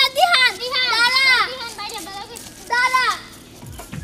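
A girl's high-pitched voice calling out in drawn-out, sing-song exclamations: a long run of cries at the start and a shorter one about three seconds in.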